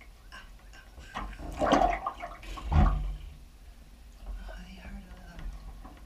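Bathwater splashing and sloshing in a tub as a person moves in it, with two louder splashes about one and a half and three seconds in.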